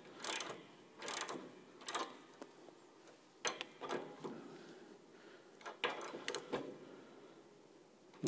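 Piano tuning pin being turned with a hand tool to wind new steel string wire into coils on the pin, heard as short bursts of clicking separated by pauses.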